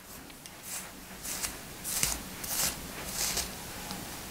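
A comb drawn through a long ponytail of hair in about five soft, scratchy strokes, one every half second or so, being used to detangle it.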